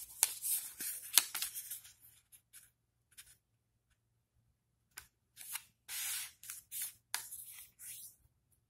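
A square of origami paper being folded in half corner to corner by hand and creased, sliding on a wooden tabletop: crisp paper rustles for the first two seconds, a pause of about three seconds, then more rustling as the fold is smoothed flat.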